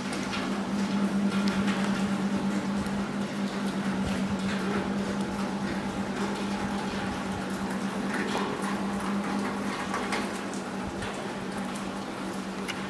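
Rain dripping and water running on wet stone paving, with scattered light footsteps and a steady low hum underneath.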